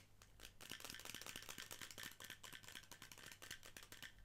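Clear plastic travel perfume container being handled close to the microphone: a quiet, rapid run of soft clicks and rustles from fingers and nails on the plastic.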